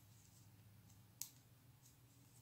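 Faint, sparse clicks of metal knitting needles tapping together as stitches are worked and bound off, the sharpest about a second in, over a low steady hum.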